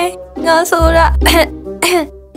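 A cartoon character's voice speaks a short questioning line over background music with a steady low bass. It is followed by a rasping, cough-like sound in the second half.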